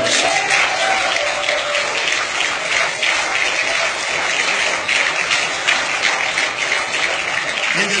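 Audience applause, loud and dense clapping, with some voices mixed in during the first couple of seconds.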